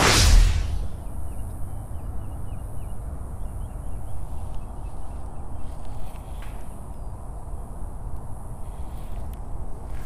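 Wind buffeting a chest-mounted action camera's microphone, a steady low rumble, after a sharp whoosh right at the start. Faint short chirps come a couple of seconds in.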